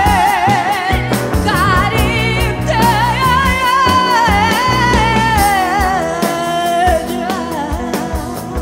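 A woman singing live with a band behind her (bass, drums, guitar), her long held notes wavering with vibrato. Her last held note ends about seven seconds in, leaving the band playing on.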